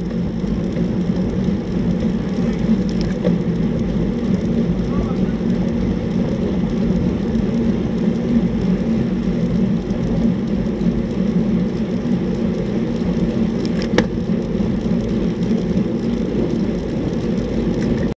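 Steady wind rumble buffeting the microphone of a camera on a moving road bike, mixed with road noise. One sharp click late on.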